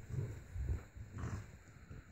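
French bulldog making low, rough grunts, three in about two seconds.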